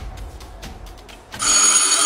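A loud, steady electronic ringing tone, several high pitches at once, starts about one and a half seconds in and stops sharply after under a second.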